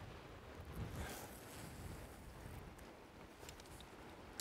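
Faint steady rush of flowing river water with some wind on the microphone, swelling slightly about a second in.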